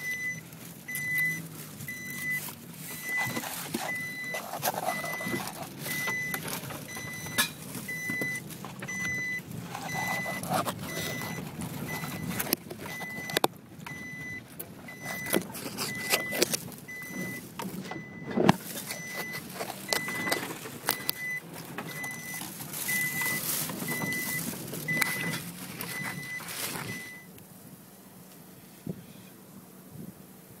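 Cabin noise of a Nissan X-Trail driving over rough, tussocky meadow: engine and tyre noise with repeated knocks and rattles from the bumpy ride. A high electronic warning beep sounds steadily, about once a second, and stops about 27 seconds in, leaving faint wind.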